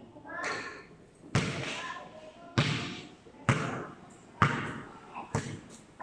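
A basketball bouncing hard on a concrete court: five sharp bounces about a second apart, each ringing on under the metal roof.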